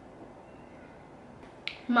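Quiet room tone, then a single sharp click near the end, just before a voice starts to speak.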